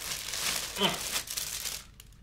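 Plastic mailer bag crinkling and rustling as it is opened and a garment is pulled out of it, stopping near the end. A brief vocal sound cuts in a little under a second in.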